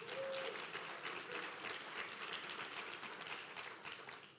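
Audience applauding, the clapping fading gradually toward the end.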